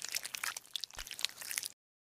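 Crunchy ASMR sound effect of a knife scraping through clustered growths: a dense run of small sharp crackles that stops shortly before the end.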